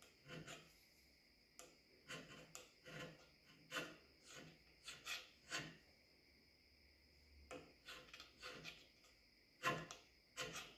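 Faint hand-scraping strokes of a flat scraper on the cast-iron compound slide of a Grizzly lathe, taking down high spots marked with bluing: short scraping pushes, roughly two a second in runs, with a pause of a second or so just past the middle.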